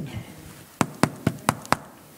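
Quick footsteps, about five sharp steps at roughly four a second, as a man hurries a few paces across a hard floor.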